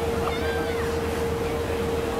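A motorboat's engine running with a steady hum and low rumble, under a wash of wind and water noise. About half a second in, a brief high-pitched rising-and-falling cry sounds over it.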